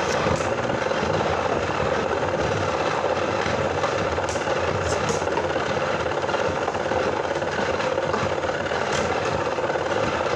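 Two Beyblade Burst spinning tops whirring against each other on a clear plastic stadium floor, a steady rattling whir with a few sharp clacks as they hit.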